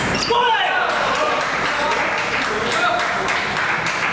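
Table tennis rally: the plastic ball clicking sharply off rackets and table in quick exchanges, over the voices of spectators in a large hall.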